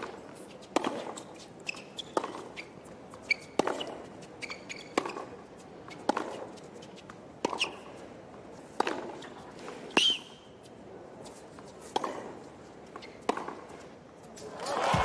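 A tennis rally on a hard court: racket strikes on the ball come about every second and a half, roughly ten strokes from the serve on, with short high squeaks from the players' shoes between some of them.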